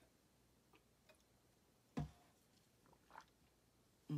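Near silence with a few faint mouth clicks and gulps as a woman swallows a sip of coffee, and one short, sharper mouth sound about halfway through.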